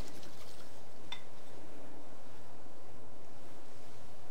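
Steady hiss of room tone, with one faint light clink about a second in, from the ceramic tea bowl as the bamboo tea whisk is rinsed in it.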